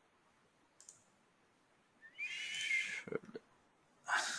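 Computer mouse clicks, one about a second in and a couple of light clicks and knocks near the end. Between them comes a short hiss with a faint rising whistle, the loudest sound here.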